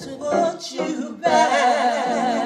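Two women singing gospel. Short, broken phrases give way about a second in to a held note with vibrato.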